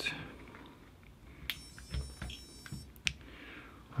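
Scattered light clicks and knocks of a LiPo battery being handled and plugged into the racing quad's power lead. About midway, a faint high electronic whine lasts for roughly a second and a half as the quad's electronics power up.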